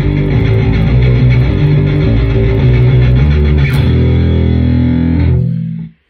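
Electric bass guitar played through the Growler bass plugin with a distorted tone: a run of low notes, then a held note from about four seconds in that dies away just before the end.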